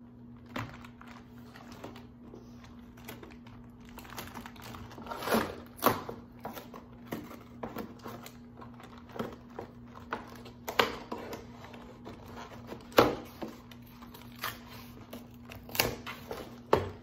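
Cardboard LEGO set box being opened by hand: fingers picking, scraping and tearing at the box's sealed flaps, giving an irregular run of clicks and sharp snaps, the loudest about thirteen seconds in.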